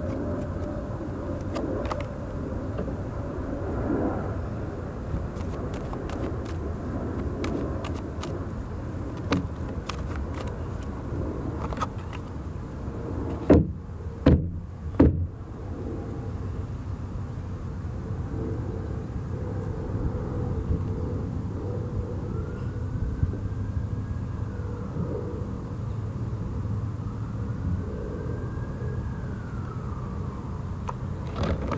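Steady outdoor background rumble with light clicks and rustles of a tarot deck being handled and shuffled. There are three sharp taps in quick succession about halfway through, and two faint rising-and-falling tones later.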